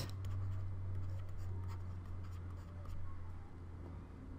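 Faint scratching and light tapping of a stylus on a drawing tablet as a word is handwritten, over a low steady hum.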